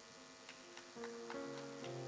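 Keyboard music starting softly, sustained chords coming in about a second in, over a light regular ticking about four times a second.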